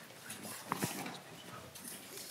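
Faint handling noise in a hearing room, papers rustling with small clicks and knocks, and a brief louder sound a little under a second in.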